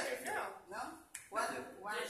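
People talking in conversation, with a single sharp tap a little past halfway.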